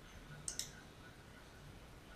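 A handheld dog-training clicker clicked once: two sharp snaps, press and release, about a tenth of a second apart. It marks the dog holding its down-stay, just before the treat is given.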